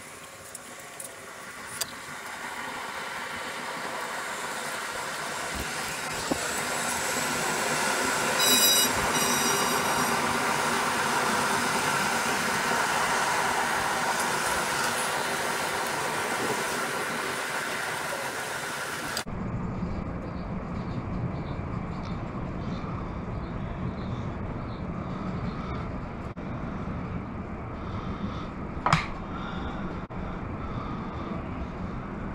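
Vehicle noise: a rumble swells over several seconds and slowly fades, like a passing vehicle, then after an abrupt cut a duller steady rumble continues, with a brief rising-and-falling squeal near the end.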